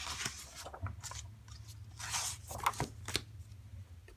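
A paper picture book being handled and closed: pages and cover rustling, with a few light sharp taps near the end as it is set down.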